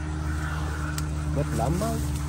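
An engine running steadily, a low hum with a constant pitch. There is a single click about a second in.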